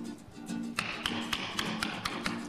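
Music with held low notes over a quick, even run of sharp taps, about four a second: a carver's chisel being struck into wood.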